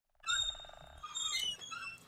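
A moment of silence, then faint night animal sounds: scattered high chirps and a short, rapid croaking pulse that stops about a second in.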